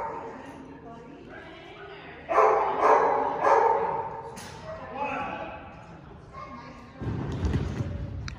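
A dog barking during an agility run: a quick series of about three barks a couple of seconds in and another around five seconds, followed by a low thud near the end.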